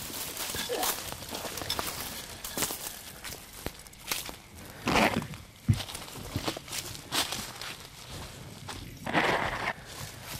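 Footsteps pushing through dry leaves and brushy undergrowth, with irregular crunches and crackles of twigs and louder rustles of brush about five seconds in and near the end.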